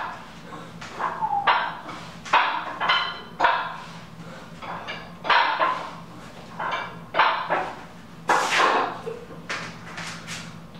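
Short, forceful breaths and grunts, about one a second, from a man swinging a 100-pound plate-loaded T-bar handle, each breath timed to the hip drive of a swing.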